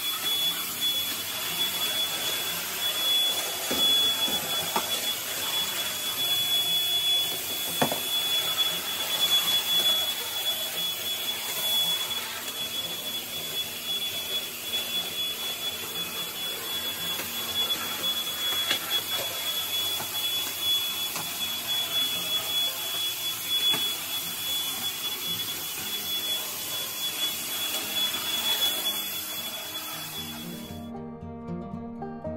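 Cordless stick vacuum cleaner running steadily over a tiled floor, its motor giving a steady high whine over the rush of air.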